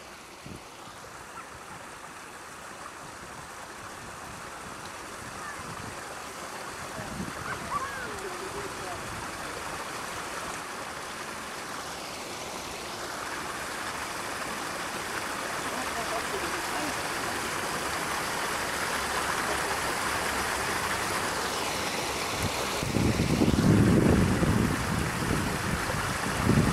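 Water running and splashing down a stone cascade fountain, a steady rushing that grows gradually louder, with a louder low rumble for a couple of seconds near the end.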